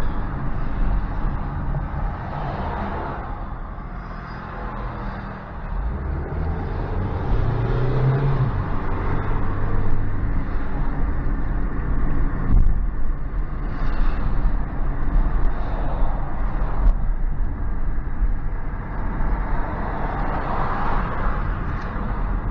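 Steady road and engine noise inside a moving car's cabin, dipping briefly about five seconds in and then rising again.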